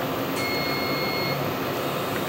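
A single steady electronic beep, about a second long, from the LASIK laser equipment, heard over a constant machine hum.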